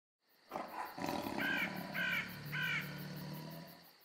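Three harsh cawing calls about half a second apart over a low rumbling roar that fades out near the end.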